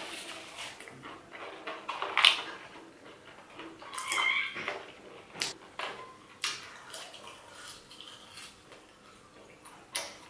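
Close-up eating sounds: chewing and mouth noises with scattered clicks and crunches as McDonald's fries and a crispy chicken burger are eaten, with napkin rustle. About four seconds in there is a brief high-pitched squeal.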